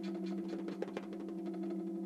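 Electronically prepared snare drum sounding a steady low two-note drone, with a faint buzzing rattle pulsing about five times a second and a couple of light taps about a second in.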